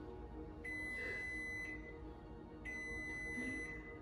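Background music with a high, steady electronic beep that sounds twice, each time for about a second.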